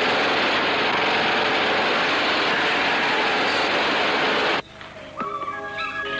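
A loud, steady rushing noise from a movie trailer's soundtrack, cutting off suddenly about four and a half seconds in, after which music with held notes comes in.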